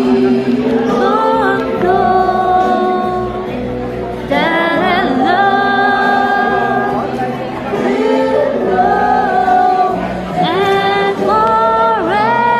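A woman singing live over backing music, holding long notes that bend up and down, in a large echoing hall.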